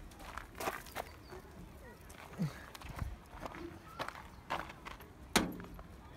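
Footsteps on gravelly ground and light knocks around a sheet-metal pigeon coop, with one sharper knock near the end as the coop door is pushed shut.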